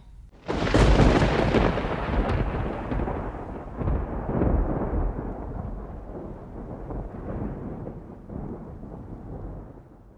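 A sudden thunderclap-like boom about half a second in, followed by a long rolling rumble that swells again around four seconds and gradually fades away near the end, a thunder sound effect.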